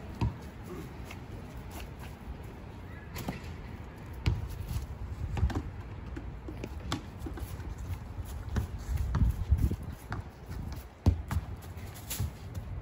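Outdoor yard activity: scattered light thumps and sharp clicks over a low, uneven rumble. A soccer ball is kicked about a quarter second in, and there are footsteps on grass and balls being handled and thrown.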